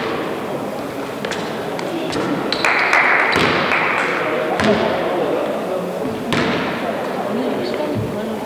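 Indistinct voices of players and officials echoing in a large, mostly empty gymnasium, with scattered thuds and knocks on the court and a brief rise of noise about three seconds in.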